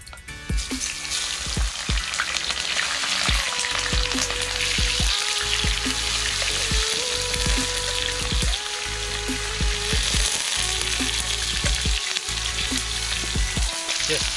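Chunks of seasoned burbot sizzling in hot oil in a frying pan, being stirred with chopsticks. The sizzle starts about half a second in as the fish hits the pan and then holds steady.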